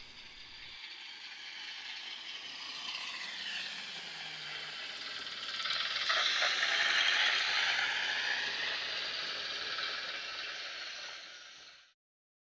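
A train passing: a rattling, hissing clatter of wheels on rails that builds to its loudest about six to eight seconds in, then fades and cuts off abruptly just before the end.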